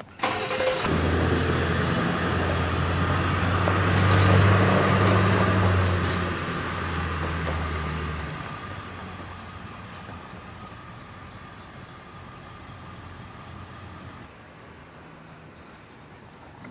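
Pickup truck engine running with a steady low hum, loudest about four seconds in, then the truck drives off and the sound fades away over the following seconds.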